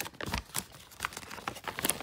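Folded paper checklist leaflet being unfolded and handled: an irregular run of short paper crackles and clicks.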